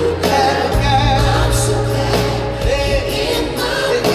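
Live R&B song performed by a band, with a male lead singer over sustained bass and keyboards, heard from the crowd in an arena.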